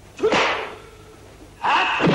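Two dubbed film fight sound effects, each a sharp whip-like strike sound with a short shout laid over it, about a second and a half apart.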